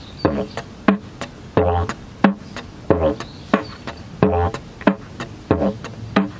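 Didgeridoo played with beatbox technique: short drone notes alternate with sharp hi-hat 'ts' clicks and a 'p' toot, in a steady repeating eight-beat pattern (doo–ts–p–ts, doo–ts–p–ts), a drone note coming back about every 1.3 seconds.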